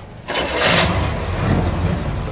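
A car engine starting: a sudden loud burst a moment in as it catches, then running steadily.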